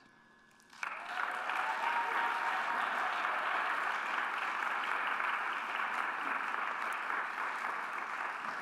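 Audience applauding, starting suddenly about a second in and holding steady, easing slightly near the end.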